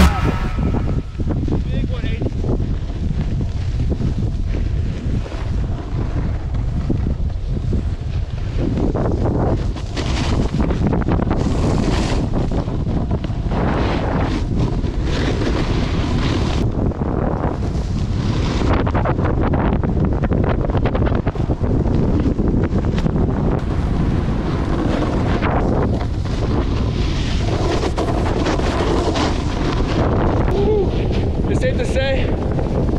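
Wind rushing over a moving camera's microphone while riding downhill on a snowboard, with the scrape of board edges on groomed snow swelling now and then as the rider carves.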